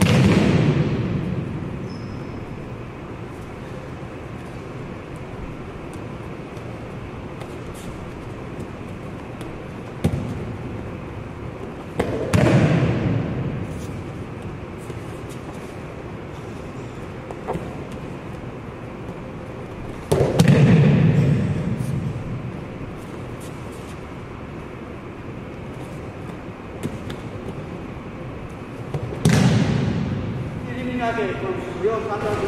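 An aikido partner thrown repeatedly onto a foam mat: four heavy breakfall thuds several seconds apart, each echoing through the gymnasium, with a couple of lighter knocks between them.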